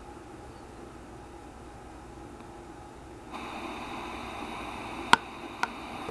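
Faint hiss from a Sony SRF-59 pocket radio tuned off-station, growing louder a little past halfway, with two short sharp clicks near the end.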